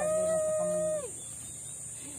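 A rooster crowing once: a single held call of about a second that rises at the start and drops away at the end.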